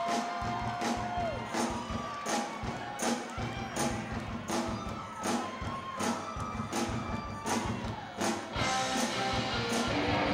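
Live rock band playing, with drums keeping a steady beat under held notes.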